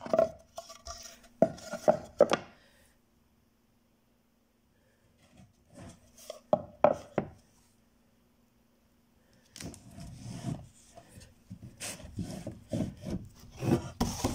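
Wooden painting panels and canvas stretcher frames being handled and shifted: clusters of knocks and rubbing, wood on wood, broken by two quiet pauses, with the handling busiest in the last few seconds.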